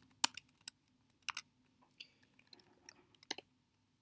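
Computer keyboard typing: about a dozen separate keystrokes at an irregular pace, with the strongest near the start and another pair near the end.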